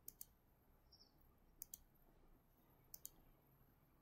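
Computer mouse clicking quietly: three pairs of short clicks, each pair about a second and a half after the last.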